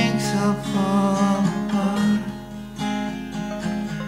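Acoustic guitar being strummed in an original singer-songwriter song, with long held notes above it.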